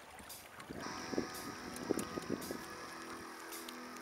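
Small sailboat underway: water lapping against the hull with a few soft knocks. Steady high tones come in about a second in and hold.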